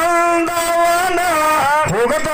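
A man's voice singing a line of a Kannada dollina pada folk song through a microphone, holding one long note that breaks off near the end before the next phrase begins.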